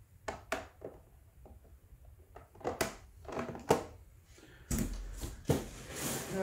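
Hard plastic graded-comic slabs being handled and set down: a scatter of light clacks and knocks, with a duller thump near the end.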